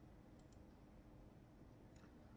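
Near silence: room tone, with a couple of faint computer-mouse clicks about half a second in, advancing the slide.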